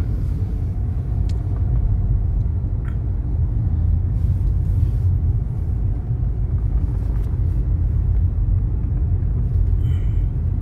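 Steady low rumble of a car in motion, heard from inside the cabin: road and engine noise with a few faint clicks.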